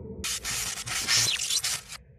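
Logo-intro sound effect: a burst of harsh, crackling hiss, electric-spark style, starting about a quarter second in and cutting off abruptly at the end.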